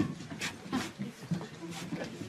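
Short breathy panting huffs, three of them over two seconds, like a dog panting, mixed with a brief "ah".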